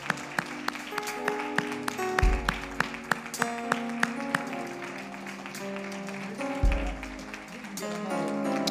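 Instrumental church music playing sustained chords, with two deep bass notes about two seconds in and near the end. Over it, hands clap in applause, at an even beat of about three claps a second through the first half.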